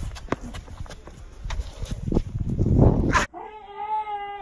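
Scuffing footsteps and knocks with wind and handling noise on the microphone as people run across grass, swelling just before a sudden cut. After the cut, a long held vocal cry at a steady pitch begins.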